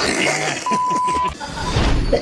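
A single steady beep, lasting about two-thirds of a second, of the kind used to censor a word, over a busy mix of voices.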